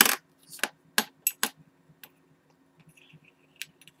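Silver coins and bars clinking and tapping on a wooden tabletop as they are picked up and moved by hand: one sharp click at the start, then a handful of lighter clinks, with one more near the end.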